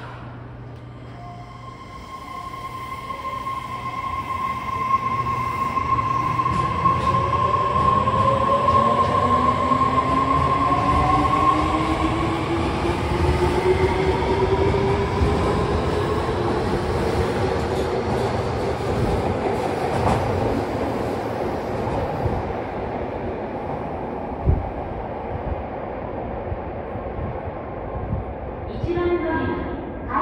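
Fukuoka City Subway 2000N-series train pulling out of the station: the inverter-driven traction motors give a steady high tone and several whines that climb in pitch as it accelerates, with the cars rumbling past and the sound fading as the train runs into the tunnel. A single sharp knock comes near the end.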